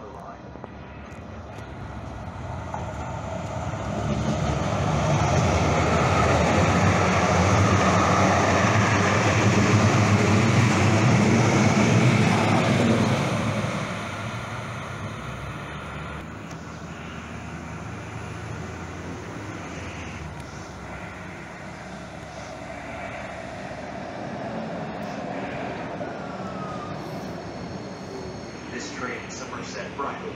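Light rail train arriving at a station platform. Its rumble grows over the first few seconds and stays loud for about nine seconds. It then drops at about the halfway point to a steadier, lower sound as the train slows and stands at the platform.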